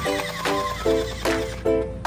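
Background music: an upbeat tune of evenly spaced, short pitched chords, about two or three a second.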